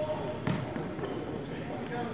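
Basketball bouncing on a hardwood gym floor: a sharp impact about half a second in and another near the end, over indistinct voices in the hall.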